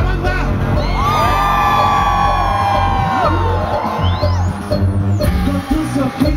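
Live electronic dance music played loud through a festival PA, with heavy bass. A long held note bends up at its start and down at its end, and a fast rising sweep follows.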